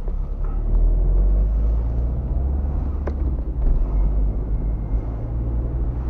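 Car engine and road noise heard from inside the cabin while driving slowly: a steady low rumble that grows louder about a second in, with a single click near the middle.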